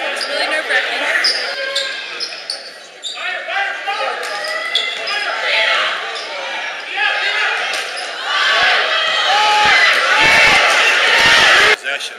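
Basketball game in a gymnasium: the ball bouncing on the court amid players' and spectators' shouts. The crowd then cheers loudly for the last few seconds, for the last-second winning layup, and the sound cuts off suddenly.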